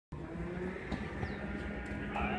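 Low steady rumble with a steady hum of a vehicle engine running at idle, with a single knock about a second in.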